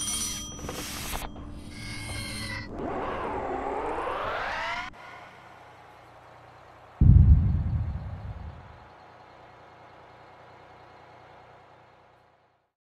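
Animated-film sound effects: a few short noisy bursts, then a wavering pitched tone that sweeps down and back up and cuts off suddenly. A single loud, low boom follows and dies away over a second or so.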